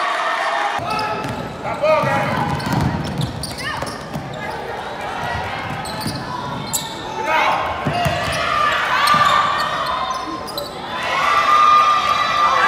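Live game sound of a women's basketball game in a gymnasium: the basketball bouncing on the hardwood court, with calls and shouts from players, coaches and spectators.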